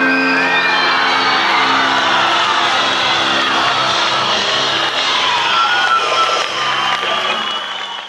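Rock concert audience cheering and whooping at the end of a song, over the band's held final chord still sounding through the PA. Everything fades out near the end.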